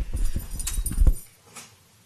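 Rustling and low thumps close to a microphone, as someone gets up from a seat, lasting about a second and ending in a louder thump; then quiet room tone with one faint knock.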